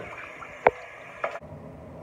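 Shower spray running as an even hiss, with one sharp click about two-thirds of a second in. The hiss cuts off suddenly after about a second and a half, leaving a quiet low room hum.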